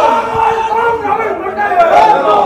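Chatter of a crowd of men talking over one another, several voices at once with no single clear speaker.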